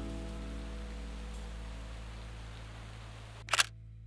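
A sustained music chord fades slowly, and near the end a camera shutter clicks, a quick double click, as the picture changes to a film photograph.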